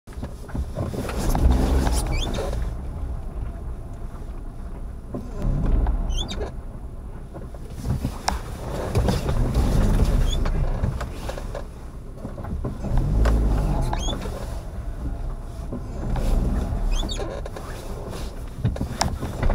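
Car driving slowly, heard from inside through a dashcam: a low rumble swells and fades about every four seconds, with a short high squeak at each swell.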